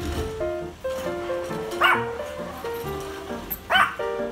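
Yorkshire terrier giving two short barks about two seconds apart at a garbage truck, over background music.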